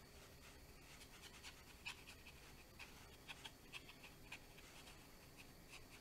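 Near silence, with faint, irregular light taps and scratches of a paintbrush dry-brushing and tapping paint onto watercolour paper.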